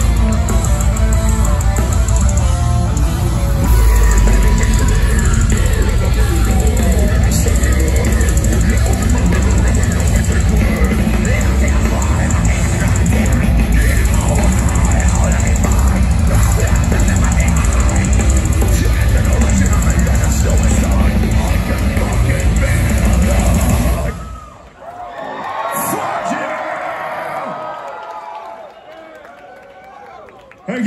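Deathcore band playing loud live metal, with heavy guitars, drums and vocals, that stops suddenly about 24 seconds in. The crowd cheers and yells after the song ends, fading toward the end.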